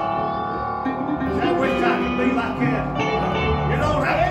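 Live church band music led by an electric guitar, with a man's voice at the microphone over it.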